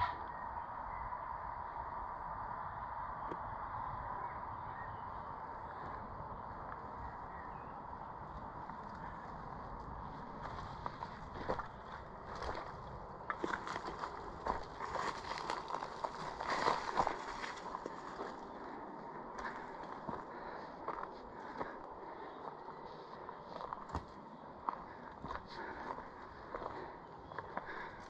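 Footsteps on loose, steep forest ground, with dry leaves and twigs crackling underfoot, in irregular steps. The first stretch holds only a faint steady background hiss, and the steps come in about a third of the way through, busiest in the middle.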